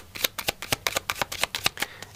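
A Smith-Waite tarot deck being shuffled by hand: a quick, even run of crisp card clicks, about a dozen a second.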